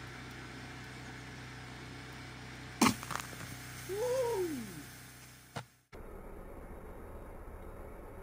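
Homemade plastic-bottle rocket launching from its bucket pad: a sudden loud pop and rush as the pressure is released, about three seconds in. About a second later a person whoops with a rising-then-falling 'woo', followed by a short click.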